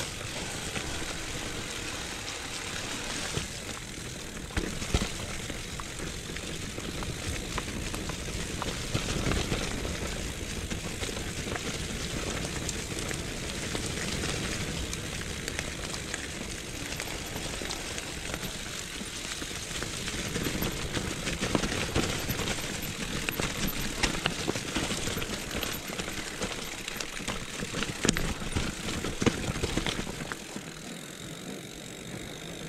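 Mountain bike descending a forest trail: a steady rush of tyre and riding noise over grass and leaf litter, with irregular knocks and rattles from the bike over bumps.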